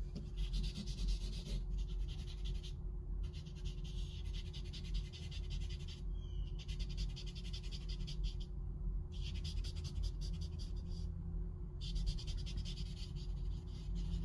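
Scratchy rubbing strokes on sketchbook paper as a hand works a charcoal drawing, in runs of one to three seconds broken by short pauses. A steady low hum sits underneath.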